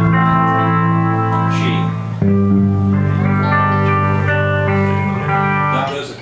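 Live country band music: acoustic guitar and pedal steel guitar holding long sustained chords, the chord changing about two seconds in. The music stops near the end.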